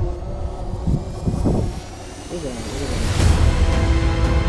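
A few indistinct voices over a low rumble. Background music comes in near the end.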